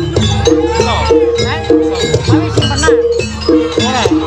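Live Javanese kuda lumping (jaranan) music from a gamelan ensemble: bronze gong-chimes struck in a quick, steady rhythm over drums, with a melody that moves back and forth between two held notes.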